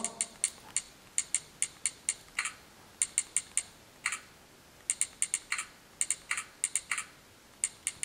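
Typing on a smartphone's on-screen Android keyboard: an irregular run of short, sharp clicks, about thirty in all, coming in quick clusters with brief pauses between words.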